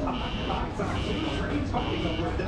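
Theme-park outdoor ambience: indistinct voices and music from the park's speakers, with a short high beep repeating about every 0.8 s.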